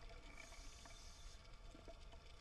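Faint, muffled underwater noise picked up by a submerged camera, with a brief high hiss from about half a second in and a few small clicks.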